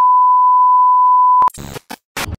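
A steady 1 kHz test-tone beep, the tone that goes with TV colour bars, cutting off sharply about one and a half seconds in. A few short bursts of glitchy noise follow.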